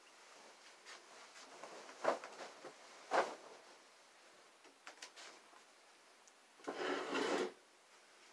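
Bedding rustling as a bed is made: two short rustles in the first few seconds, then a longer, louder one near the end.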